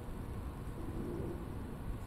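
Quiet room tone: steady low background noise, with one faint, short low tone about a second in.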